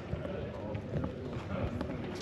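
Footsteps on a concrete yard while walking, over a low rumble of wind on the microphone, with indistinct voices of other people in the background.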